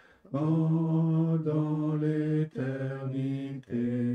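A slow hymn tune moving through four long held notes of about a second each, with short breaks between them.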